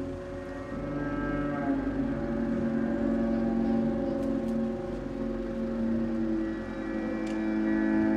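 Soundtrack of a building projection-mapping show played over loudspeakers: layered, sustained low drone tones, with pitches shifting and sliding now and then.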